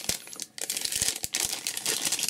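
Clear plastic bag wrapped around a wristwatch crinkling as it is lifted and handled, a dense crackle of many small clicks with a short lull about half a second in.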